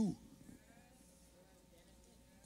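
A man's sermon voice trails off on a drawn-out, gliding syllable at the very start, then a pause with only faint room tone.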